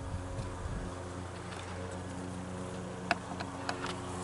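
Honey bees humming steadily around a frame lifted out of an open hive. There is a single short click about three seconds in.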